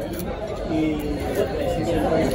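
Indistinct chatter of diners talking in a restaurant, with a couple of light clicks of a knife and fork against a plate.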